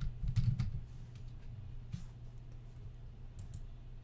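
Typing on a computer keyboard: a quick run of keystrokes in the first second, then a few scattered clicks, over a low steady hum.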